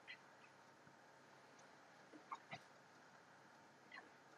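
Near silence: faint room tone, broken by a few brief, faint chirps or squeaks at the very start and about two seconds in.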